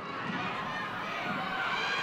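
Football stadium crowd ambience: a steady hubbub of spectators' and players' voices during open play, swelling a little near the end.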